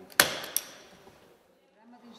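Two knocks: a loud, sharp one with a short ringing tail, then a lighter one about a third of a second later.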